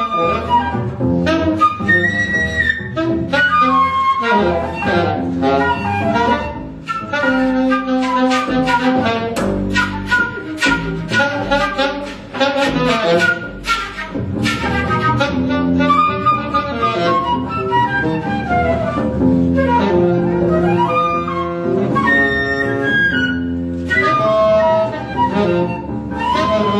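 Free jazz improvisation: flute lines over double bass, with woodwind in the mix and many short, sharp attacks through the first half.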